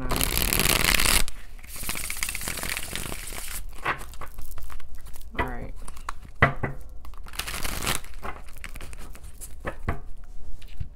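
A deck of oracle cards being shuffled and handled: long bursts of sliding, rustling card noise near the start and again about three quarters through, with sharp taps and slaps between them.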